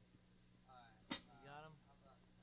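Faint talk in two short snatches, with a single sharp click about a second in, over a steady electrical hum.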